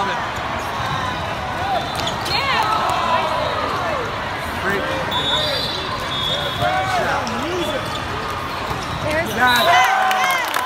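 Volleyball hall din: a steady murmur of voices from players and spectators across many courts. Through it come sharp ball hits and short squeaks from sneakers on the sport-court floor, busier and louder in the last second or so.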